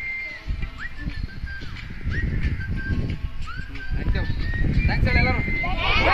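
A crowd of schoolchildren's voices chattering and calling out over a low rumble.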